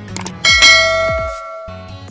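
Subscribe-button animation sound effect: a couple of quick clicks, then a bright notification-bell ding about half a second in that rings out and fades over about a second.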